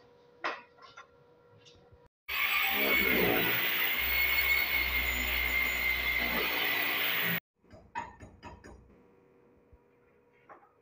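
A handheld electric drill runs at full speed for about five seconds, boring into the wall, with a steady whine, starting and stopping abruptly. A few light metallic clinks come before and after it.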